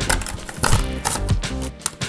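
Toy blister pack being torn open: cardboard ripping and clear plastic crackling in several short, sharp rips, over background music.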